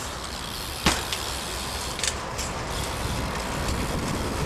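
BMX bike rolling over concrete, a steady rumbling rolling noise, with one sharp clack about a second in and a few lighter clicks after it.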